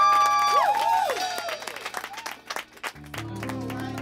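Live band closing a song: a held high note that breaks into a few quick sliding swoops, with drum hits and some clapping. About three seconds in, bass and keyboard come in with a soft, sustained chord vamp.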